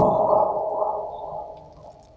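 A man's voice drawn out on one steady pitch, fading slowly away over about two seconds after a brief click at the start.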